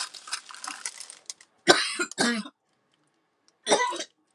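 Crinkling of plastic drill bags being handled, then a woman's two coughs, a short pause, and a third cough near the end. The coughs are the loudest sounds.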